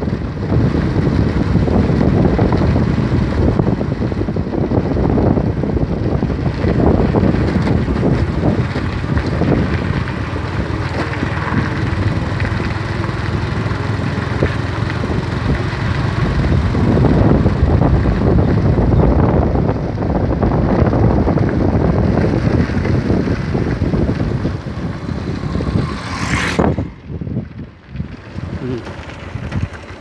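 Heavy wind rumble on the microphone of a moving open vehicle, over the vehicle's running engine. The rumble drops away sharply near the end as the vehicle slows.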